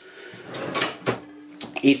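Sam4S ER-900 cash register's cash drawer springing open, a sliding rattle ending in a clunk about a second in, then a brief steady tone. The drawer opens because No Sale has been accepted in manager (X) mode.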